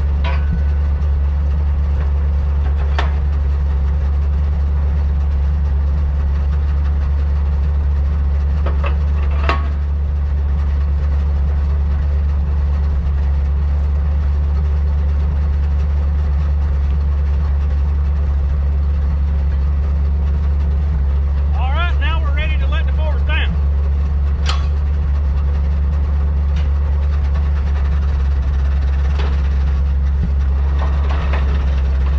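Log truck's engine idling steadily, with a few sharp metal clanks as the side loader's arms are handled. A brief warbling sound comes about two-thirds of the way through.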